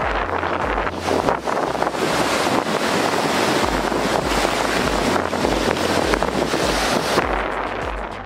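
Sea wind rushing over the microphone, mixed with surf. Background music with a steady low beat runs underneath. The wind noise falls away about a second before the end.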